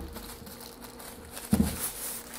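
Thin plastic bag rustling and crinkling as a boxy unit is slid out of it, with a short low thump about a second and a half in.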